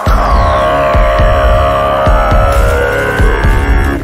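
Electronic intro music with a heavy bass beat under sustained synth tones, one of which glides steadily down in pitch.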